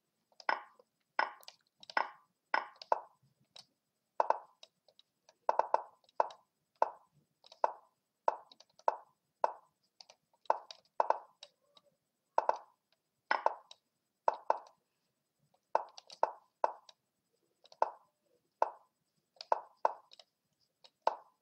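Lichess move sounds from a fast bullet chess game: short wooden clicks of pieces being set down, about one and a half a second at an uneven pace, some in quick pairs as both sides move almost at once.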